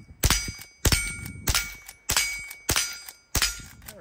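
Henry H001 lever-action .22 rimfire rifle fired in rapid succession, about six shots roughly every half second or so as the lever is worked between them. After the hits, steel targets ring with a clear metallic tone.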